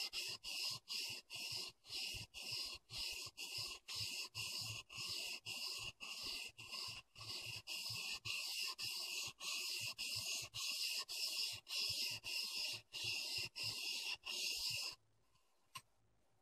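A steel clipper blade rubbed back and forth on a 1000-grit waterstone in even gritty strokes, about two and a half a second, grinding the blade flat and raising a new edge on its teeth. The strokes stop about a second before the end, followed by one small click.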